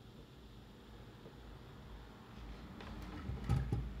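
Quiet room tone, then a few soft knocks and handling rumble about three and a half seconds in as a small Netgear network switch is set down on a wooden table.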